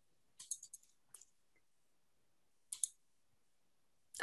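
Faint computer mouse clicks: a quick cluster about half a second in, a single click about a second in, and two close together near three seconds, with near silence between.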